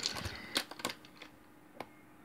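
Several light, sharp clicks of wooden coloured pencils being handled, as one pencil is set down and another taken up.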